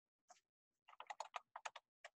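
Faint computer keyboard typing: a single keystroke, then a quick run of about ten keystrokes about a second in, as one word is typed.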